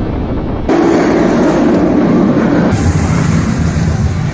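Roller-coaster train running along its track: a loud, steady rushing noise that changes abruptly about two-thirds of a second in and again near three seconds, as the footage cuts between rides.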